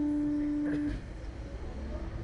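A steady single-pitch hum from the Slingshot ride's machinery, cutting off suddenly about a second in and leaving a low background rumble.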